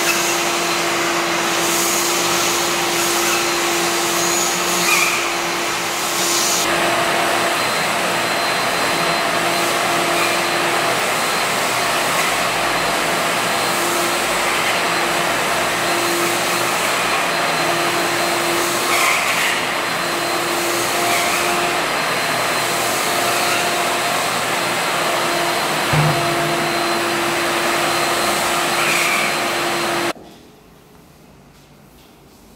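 Canister vacuum cleaner running steadily, its floor nozzle sucking up sanding dust from a sanded parquet floor, with a steady motor hum under the rush of air. A few brief knocks come through along the way.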